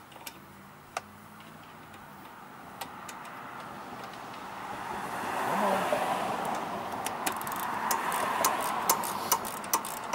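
Sharp clicks of a socket ratchet snugging down the carburetor float-bowl nut on a lawn mower engine. Over it, a rising rush of background noise swells up about halfway through and holds.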